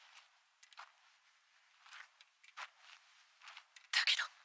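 Faint, irregular short clicks and taps, about a dozen of them, with a louder burst right at the end.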